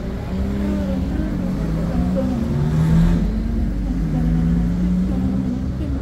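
Street traffic, with a car passing close by about three seconds in.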